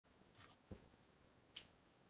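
Near silence with two faint, brief clicks a little under a second apart.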